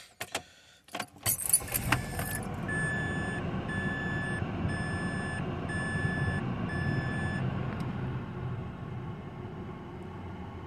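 Keys jangling and clicking, then a car engine starts about a second in and runs steadily, while the car's warning chime beeps five times.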